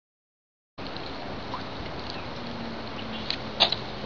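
Dead silence for under a second, then a steady hiss of outdoor background noise, with a couple of faint clicks near the end.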